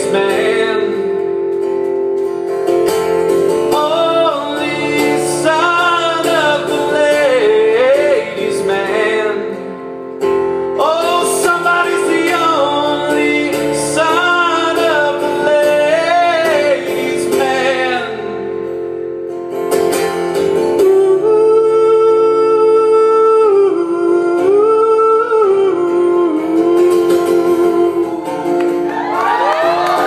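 Male singer with acoustic guitar performing live, singing long, sliding notes over steady guitar chords, with a brief drop in level about ten seconds in.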